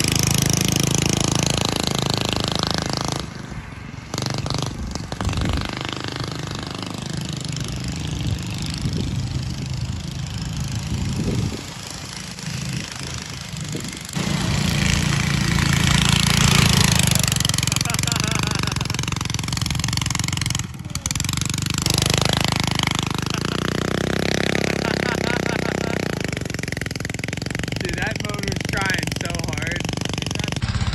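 A go-kart's small engine running and revving as the kart is driven, its pitch rising and falling, with a few abrupt breaks in the sound.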